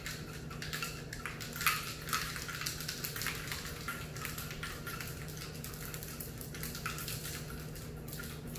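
Ice and liquid rattling and swishing inside a metal cocktail shaker being shaken hard, in repeated strokes about twice a second, chilling a whiskey sour mix.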